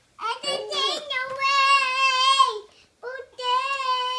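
Young girl singing the blues in high, long-held notes with a wavering pitch: two drawn-out phrases with a short break between them, the second starting about three seconds in.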